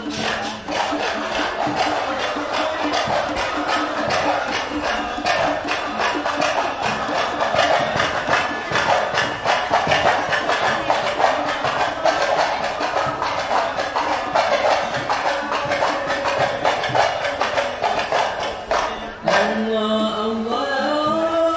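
Procession percussion playing a fast, even beat of struck drums, with a crowd's voices underneath. The beat stops about a second before the end, and a chanting voice begins.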